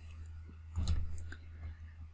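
A few soft clicks, with one louder cluster a little under a second in, over a steady low electrical hum.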